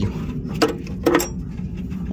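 Two short clicks or knocks about half a second apart as gloved hands handle parts at the truck's oxygen-sensor wiring, over a steady low hum.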